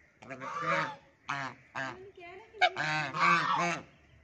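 Domestic geese honking, about six calls in quick succession, some short and clipped, others drawn out.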